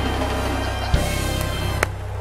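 Church gospel band holding a steady closing chord with a sustained low note, with a single knock about a second in.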